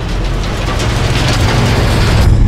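A rush of noise that swells over the two seconds: the animation's sound effect of stones churning under asphalt-mixer paddles. Background music with a steady low hum runs beneath it.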